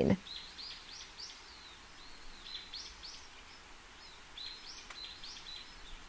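Faint bird chirps, a few quick high rising notes at a time, coming in three or four small clusters over a low steady hiss.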